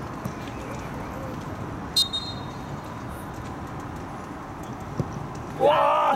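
A short, high referee's whistle about two seconds in, then a single thud of a soccer ball being kicked at about five seconds, followed by loud shouting from players and onlookers as the penalty is taken.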